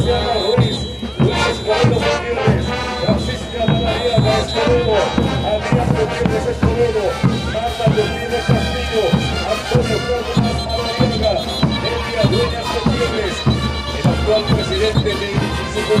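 Andean folk music: wind instruments playing a melody over a steady, regular drumbeat.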